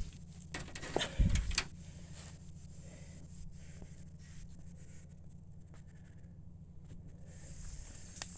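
Handling and rustling noise from a phone carried through brush, with a few knocks and a heavy low thump about a second in. After that, a steady low engine hum from the idling pulling vehicle.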